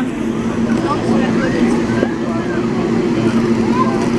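Crowd voices chattering over a steady low hum from an idling train.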